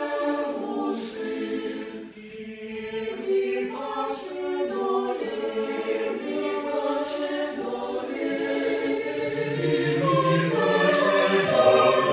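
Mixed choir singing a polyphonic piece unaccompanied, several voice parts moving at once. Low men's voices join about nine seconds in, and the singing grows louder toward the end.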